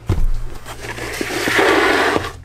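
A robot vacuum is set down on a wooden floor with a low thump, followed by about a second of rustling, scraping handling noise that grows louder near the end.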